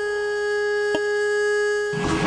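A single steady held tone with a clear series of overtones, with a brief click about a second in.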